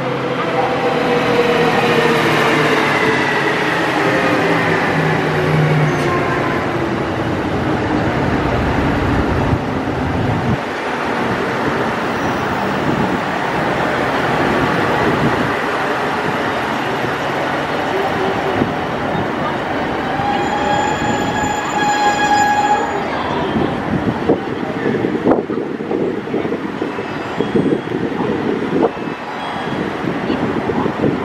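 KiHa 189 series diesel multiple unit arriving and slowing to a stop, the pitch of its engines and running gear falling over the first ten seconds. A squeal lasting a few seconds comes about twenty seconds in, and scattered clicks near the end.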